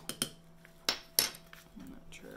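Metal teaspoon clinking against a stainless steel tea infuser basket as loose tea is spooned in: a few light clinks, then two sharper ones about a second in.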